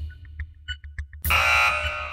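Game-show suspense music of short electronic blips over a pulsing low beat. A little past halfway it gives way to a loud, harsh buzzer tone that holds for under a second.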